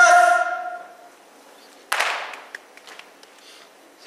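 A long, steady held note from a voice, fading out within the first second. Then quiet, broken by one sharp crack that rings away in the hall about two seconds in, and a few faint clicks.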